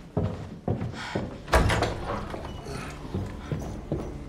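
Hurried footsteps on a hard floor, about two steps a second, with a louder sharp thud about a second and a half in, followed by lighter steps.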